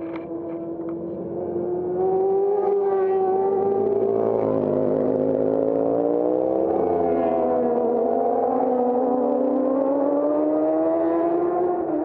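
Racing motorcycle engine approaching and passing at speed, getting loud about two seconds in and staying loud, its note dipping and rising several times as it comes through the bends.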